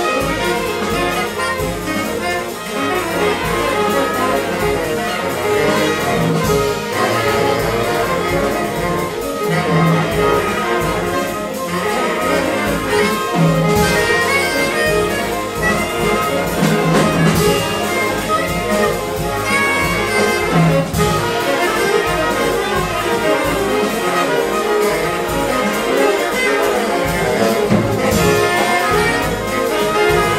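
Live big-band jazz: trumpets, trombones and saxophones playing together with a rhythm section, a featured saxophone out front, at a steady full level throughout.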